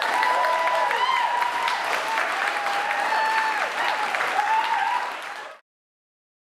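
Audience applauding after a piano song, with a few voices calling out over the clapping; it cuts off abruptly about five and a half seconds in.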